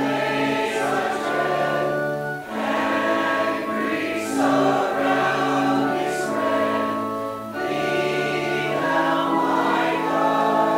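Congregation singing a hymn together, held notes in phrases with short breaks between the lines.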